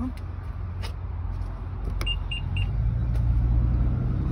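A sharp click about halfway through, followed at once by three short, high-pitched electronic beeps from a car's warning chime. A steady low rumble runs underneath and grows louder near the end.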